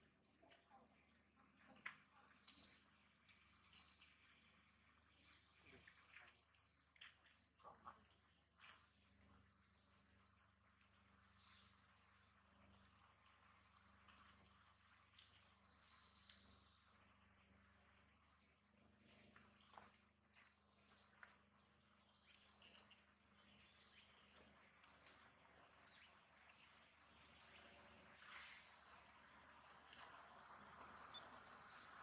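Small birds chirping: a steady string of short, high chirps, about two a second.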